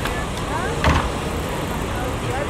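Street traffic noise with faint voices, and a single sharp knock about a second in.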